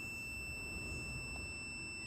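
Limit 610 digital multimeter's continuity beeper sounding one steady high-pitched tone, set off by a reading of about 1 ohm across a diesel glow plug. The beep marks a low-resistance, intact heating element: the good plug of the four.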